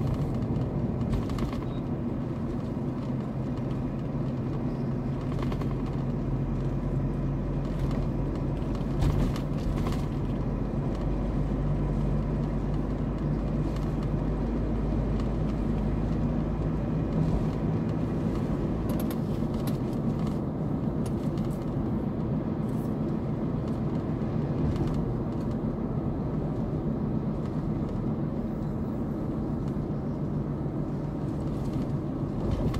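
Car driving on a paved road, heard from inside the cabin: a steady low rumble of tyres and engine.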